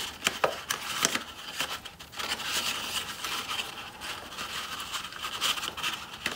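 Wool yarn pulled and rubbed against a paper plate's rim while a knot is tied, a soft rustling and scraping, with a few light taps of fingers on the paper plate in the first second or so.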